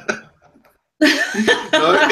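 Two people laughing over a video-call connection; the sound drops out almost completely for over half a second, then the laughter cuts back in suddenly about halfway through.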